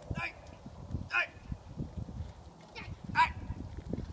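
A police K9 dog biting a decoy's padded bite suit, snorting through its nose as it jams the suit deep into its mouth. Three short high-pitched whines come about a second or two apart.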